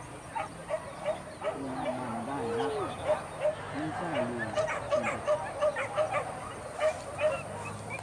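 Hunting dogs barking in a steady run of short, high yips, about two to three a second, as they give chase on a wild boar hunt.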